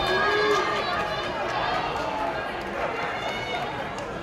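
Fight-crowd spectators shouting and calling out, several voices over one another, loudest in the first second.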